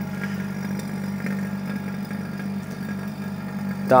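Electric vacuum pump running with a steady hum, drawing vacuum through a Sonnax vacuum test stand on a repaired automatic-transmission valve body bore during a vacuum test.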